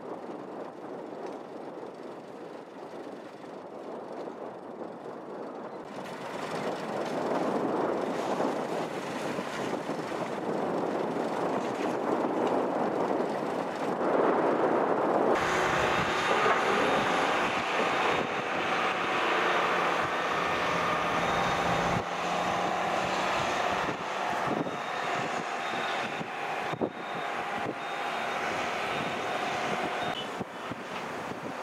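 Distant heavy construction machinery running, a steady engine noise that grows louder a few seconds in. About halfway through it changes to a steadier machine hum with faint whining tones, and low wind rumble on the microphone for several seconds.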